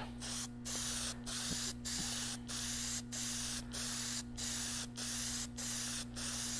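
Aerosol can of Rust-Oleum metallic semi-transparent purple spray paint hissing in about ten short passes of half a second or so, with brief breaks between, as a light coat goes on.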